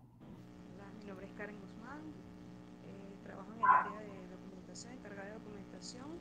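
Faint, far-off-sounding voice of a participant speaking over a video call, with a steady low hum underneath.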